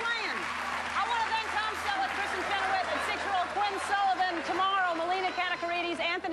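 Studio audience applauding, with voices talking over the applause.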